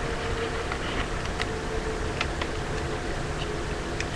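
Steady low background hum with a few faint light clicks of paper and tape being handled.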